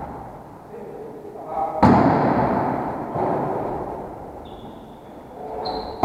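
A volleyball struck hard once about two seconds in, the sharp hit ringing out through a large echoing gym, with players' voices calling out. A short high squeak comes near the end.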